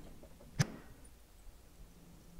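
A single faint, sharp report of a rifle shot about half a second in, then low background hum.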